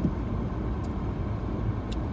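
Steady low rumble of car cabin noise, heard from inside the car, with a faint tick or two.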